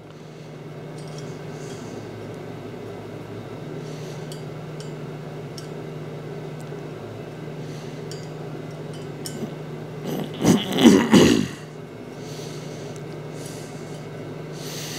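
Light metal clinks from the welded steel platen plate being handled on the grinder's arm, over a steady low electrical hum. About ten seconds in, a louder, wavering scrape lasts about a second and a half.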